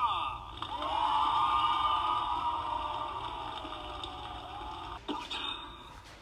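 Hogwarts Castle musical tree topper's built-in speaker playing part of its storyteller sound sequence: a quick descending glide, then a long shimmering, slowly falling tone that fades out about five seconds in, while its lights change colour.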